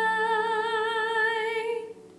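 A woman's solo singing voice holds one long note, and the vibrato grows wider toward its end. The note cuts off just before the end.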